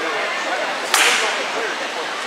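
A single sharp crack about a second in, over steady crowd chatter.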